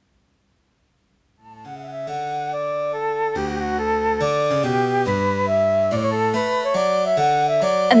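Sheet-music app playback of a French Baroque flute piece: a synthesized flute melody over a lower bass line at about 141 beats a minute, played in swing mode with uneven, long-short rhythm. It fades in about a second and a half in.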